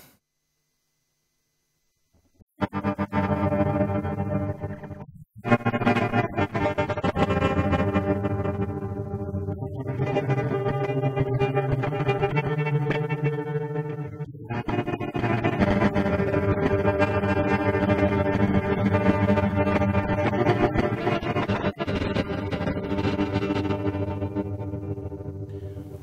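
Electric guitar played through the TipTop Audio Z DSP's Grain De Folie granular card on its Six Grains Stereo algorithm, with the feedback turned up so the grains repeat as granular delays. It comes in after about two and a half seconds of silence, drops out briefly near five seconds, then builds into a continuous layered wash of pitched grains.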